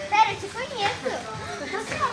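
Indistinct, overlapping chatter of young girls' voices.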